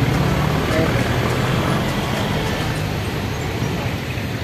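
Road traffic passing close by: vehicles driving past with a steady low engine hum.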